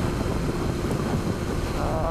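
Steady drone of a Honda CBR954RR's inline-four engine cruising at motorway speed, mixed with heavy wind rush on the microphone.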